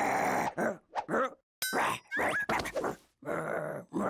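A cartoon character's wordless grunts and groans in several short bursts, with a brief rising whistle-like sound effect about two seconds in.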